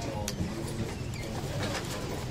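Low murmur of voices in the room.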